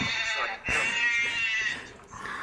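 A young man singing in a talent-show audition: a short phrase, a brief break, then one long note held with a wobbling vibrato that fades out near the end.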